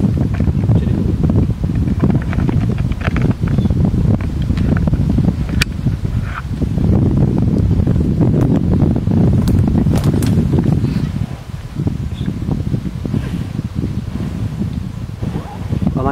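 Close rustling of clothing and foliage as a small hawk is held and handled, over a heavy low rumble on the microphone that eases off about eleven seconds in, with a few sharp clicks.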